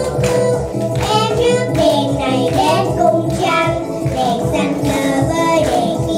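Two young girls singing a Vietnamese song together, with instrumental accompaniment.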